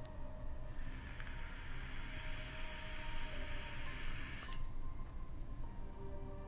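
A long draw on a 100-watt, two-battery vape mod: a hiss of air and the coil sizzling through the tank, starting about a second in and cutting off suddenly after about three and a half seconds.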